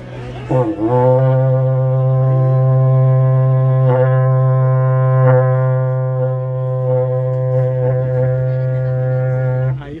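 A berrante, a long cattle horn made of cow-horn sections joined with leather bands, blown in one long, steady low note rich in overtones. After a brief wobble about half a second in, the note is held for about nine seconds and stops just before the end.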